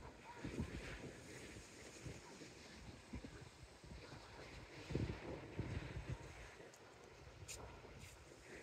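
Wind buffeting the microphone in gusts, strongest about five seconds in, over a faint, steady wash of distant breaking surf.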